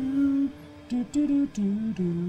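A man humming a short wordless tune to himself: a few held notes that step up and down in pitch, with brief breaks between them.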